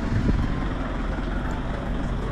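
Steady low rumble of a vehicle engine running, with outdoor street noise.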